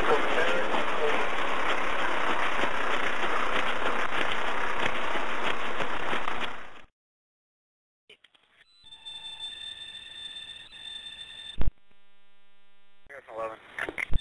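Steady noise from a police car's dashcam recording during a vehicle pursuit, cut off abruptly about seven seconds in. After a short silence comes a faint dispatch-radio recording with steady electronic hum tones, a single sharp click, and a few words of radio chatter near the end.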